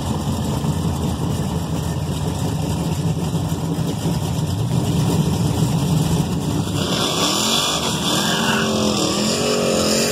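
A 1986 Chevrolet Monte Carlo SS's V8 idling with a steady low rumble. About seven seconds in, it revs up and down several times as the car pulls forward toward the starting line.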